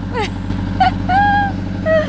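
A narrowboat's engine running steadily with an even low beat, and a woman laughing over it.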